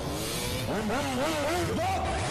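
Motorcycle engine revving, its pitch rising and falling several times, then holding steady near the end.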